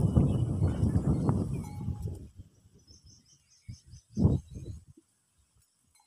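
Rumbling wind and handling noise on a phone microphone for about two seconds. Then comes a faint run of quick, high chirps from a small bird, and a brief rustle about four seconds in.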